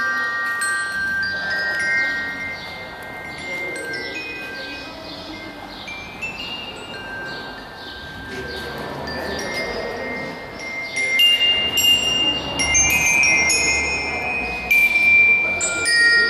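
Instrumental music of bell-like struck notes, in the manner of a glockenspiel or chimes, playing a slow melody. It dips in the middle and grows louder again near the end.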